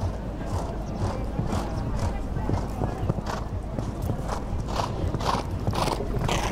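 Horse cantering on sand footing: rhythmic hoofbeats about two a second.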